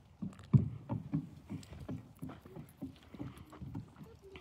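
A horse's hooves walking across a wooden trail-course bridge, a steady run of low thuds about three or four a second.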